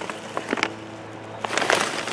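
Plastic perlite bag crinkling and rustling as it is handled and tipped for pouring, with a few light clicks, getting busier near the end. A faint steady hum runs through the middle.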